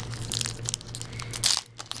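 Foil Pokémon booster pack wrapper crinkling and crackling irregularly as it is handled and pressed against a wooden table, with a louder crinkle about one and a half seconds in.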